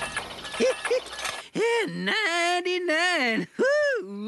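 A quick ratcheting clatter lasting about a second and a half, then a character's voice in long swooping whoops that rise and fall.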